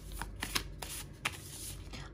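A deck of oracle cards being shuffled by hand, giving a run of short, irregularly spaced card clicks and rustles.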